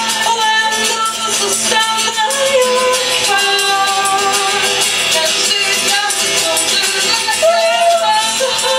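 Live acoustic song: female voices singing long held notes over strummed acoustic guitar, with a shaker keeping a steady rhythm.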